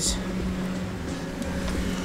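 A steady low machine hum with a low rumble beneath it.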